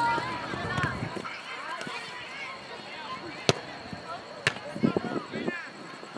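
Scattered voices of players and spectators calling across a soccer field, with two sharp knocks about a second apart midway through.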